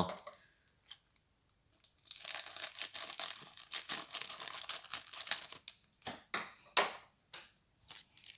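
Thin clear plastic wrapper around a jumbo trading card being torn open and crinkled. The crackling starts about two seconds in, runs steadily for around four seconds, then breaks into a few separate crackles near the end.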